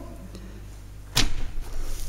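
A pause in speech, with a low steady hum of room tone, then a single short whooshing thump a little over a second in.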